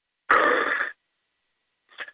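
A man's short laugh over a telephone line, thin and cut off in the highs, lasting under a second.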